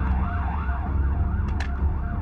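Police siren yelping, its pitch rising and falling a few times a second over a steady low rumble, with a short click about one and a half seconds in.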